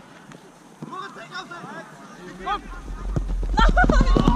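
Footballers calling and shouting across the pitch, faint and short. About halfway through, a deep low rumble comes in and grows louder toward the end.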